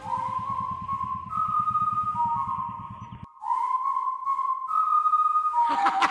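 A quiet break in the song: a single thin, high lead melody holds and steps between a few notes over a low, rapid pulse that stops about halfway through. The full music comes back in just before the end.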